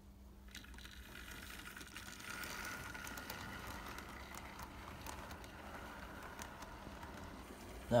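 Model railway GWR 45XX tank locomotive's small electric motor whining as the train accelerates away, growing louder over the first couple of seconds and then running steadily as the coaches roll past, with light clicks from the wheels on the track.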